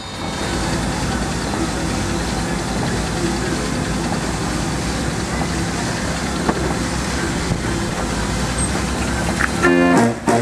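Background showground noise in a pause between organ tunes: a steady low rumble of engines with distant voices. About nine and a half seconds in, the 52-key Verbeeck street organ starts playing again.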